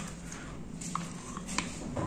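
Faint kitchen handling sounds as mayonnaise is spooned into a pot of tuna pasta salad: a few soft, short clicks over a low steady hum.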